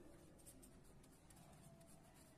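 Faint scratching of a felt-tip marker writing on paper.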